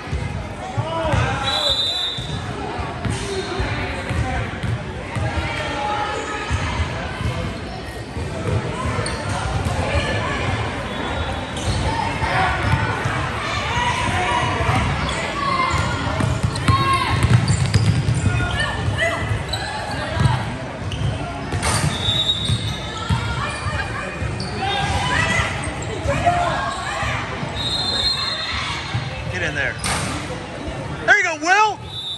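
A basketball being dribbled and bouncing on a hardwood gym court during play, with players' footfalls and scattered voices echoing in a large hall.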